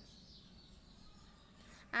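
Near silence: faint steady background hiss, with speech starting right at the end.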